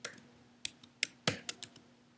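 Computer keyboard keys being typed: about seven separate, uneven keystroke clicks.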